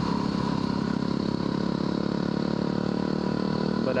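Yamaha WR250R's 250 cc single-cylinder four-stroke engine running steadily at a road cruising pace, heard from the rider's seat.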